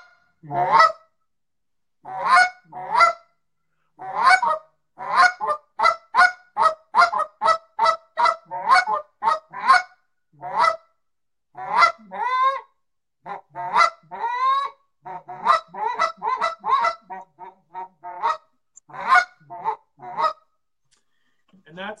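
Canada goose call blown by hand as a demonstration of high goose and low goose notes, with clean honks, many of them breaking from a high note to a low one. The notes come in quick runs of about four a second, with pauses and a few longer, drawn-out notes between the runs, and stop shortly before the end.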